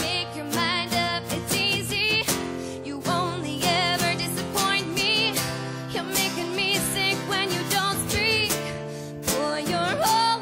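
Live acoustic pop song: a woman sings a melody with vibrato over a strummed acoustic guitar.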